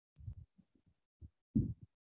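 A run of short, low, dull thumps, about seven in under two seconds, the loudest about one and a half seconds in, heard through a video call's audio feed.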